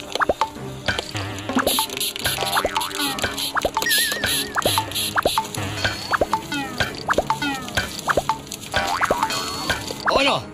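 A rapid, irregular string of comic blaster sound effects, each a quick sweep in pitch, mostly falling, fired as toy water guns shoot, over background music.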